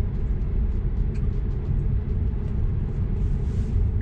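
Steady low road and tyre rumble inside the cabin of a moving 2018 Tesla Model 3 electric car, with no engine note.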